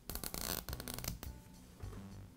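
Nylon cable tie being pulled tight through its head, the ratchet clicking rapidly for about a second.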